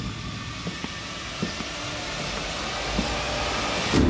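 Cinematic sound-design riser: a rushing hiss that slowly swells, with a few soft low thumps, the first one the loudest.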